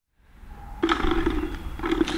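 Brief dead silence at an edit, then steady outdoor background noise on an open microphone fading in, with a low, even hum coming in about a second in.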